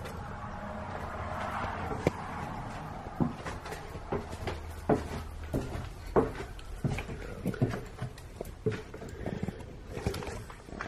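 Footsteps going down concrete stairs and onto a concrete basement floor: a string of irregular knocks starting about two seconds in. Before them comes a soft rushing noise.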